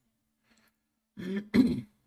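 A man clears his throat once, briefly, after about a second of near silence.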